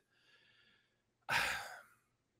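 A man's audible breath or sigh into a close microphone, starting suddenly just over a second in and fading out over about half a second, after a moment of near silence.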